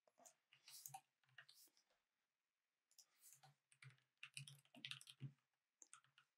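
Faint typing on a computer keyboard: quick runs of key clicks, with a pause of about a second around two seconds in before a longer, denser run.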